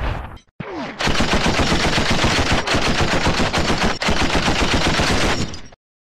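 Machine-gun fire sound effect in a TV show's title ident: one long rapid burst of shots starting about a second in and cutting off suddenly near the end. It follows a brief whoosh that ends about half a second in.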